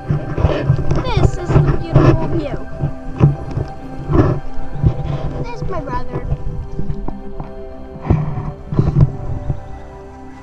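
Laughter and excited squeals from people playing on a playground spinner, coming in several loud bursts over soft background music.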